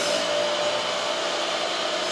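Steady rushing air noise of a running blower-type machine, with a faint steady hum.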